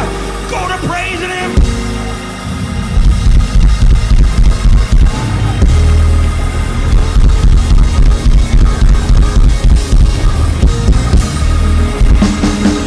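Church band playing fast, driving gospel music on drum kit and bass, about three to four beats a second. A voice sings briefly at the start before the band takes over.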